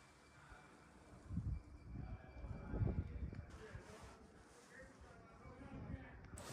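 Faint, indistinct voices with a few low thumps, the strongest about one and a half and three seconds in.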